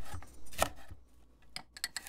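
Chef's knife slicing jalapeño peppers on a wooden cutting board: a couple of separate cuts in the first second, a short lull, then a few quick light taps near the end.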